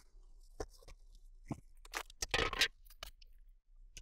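Thin plastic protective bag crinkling and rustling in short, uneven bursts as it is pulled and handled, the loudest stretch about halfway through.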